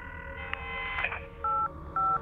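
Telephone touch-tone dialing: a held electronic tone for about a second, then short two-tone keypad beeps, one after another in the second half.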